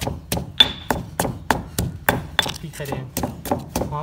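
Pestle pounding in a stone mortar: quick, even knocks at about five strikes a second, pounding seasoning ingredients.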